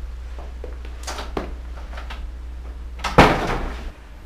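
A door being shut: a few faint knocks, then one loud thud about three seconds in. A steady low hum runs underneath.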